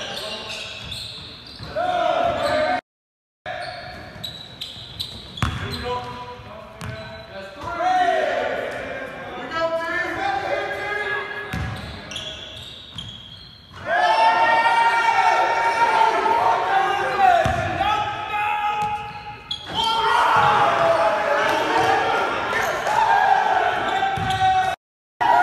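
Players shouting and cheering in a large, echoing gym, with a basketball bouncing on the hardwood floor. The voices turn much louder and overlap about halfway through.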